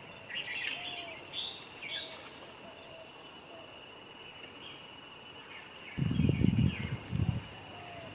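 Steady chirring of insects with several short bird chirps in the first two seconds. About six seconds in comes a louder low rumble lasting about a second, with a shorter one just after.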